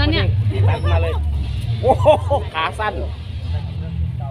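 People talking in Thai over a steady low rumble.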